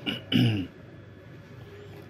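A man clears his throat once near the start, a short rasp lasting about half a second.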